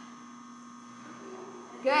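Steady electrical hum with a few fixed tones over quiet room tone, until a woman's voice comes in near the end.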